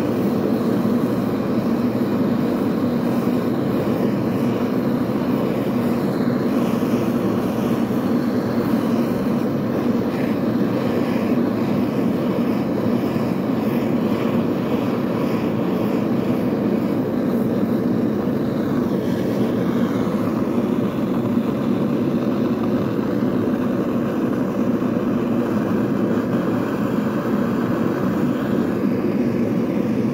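Handheld gas torch burning steadily, a continuous deep rush of flame as it heats a steel hook-knife blade for bending.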